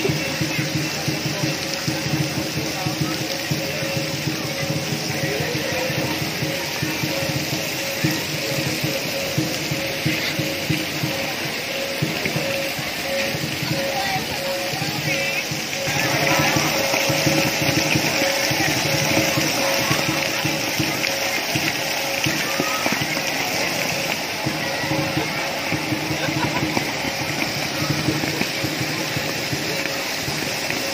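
Steady hiss and patter of water jets spraying onto a shallow pool, growing louder about halfway through, mixed with background music and voices.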